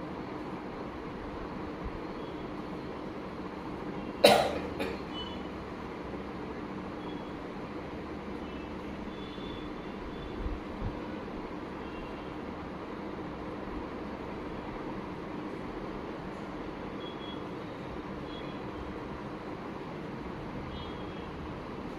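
Steady room background noise with a faint low hum, broken about four seconds in by one short, loud, sharp sound with a brief trailing second part, and two faint low knocks around eleven seconds.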